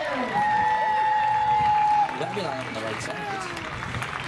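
A voice holding one long, steady call for under two seconds, then a few short rising and falling vocal sounds.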